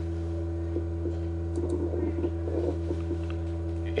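Steady low electrical hum from the recording setup, holding one pitch with its overtones, with a few faint ticks.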